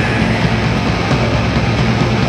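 Live heavy metal band playing loud: distorted electric guitars, bass and drums in a dense, continuous wall of sound.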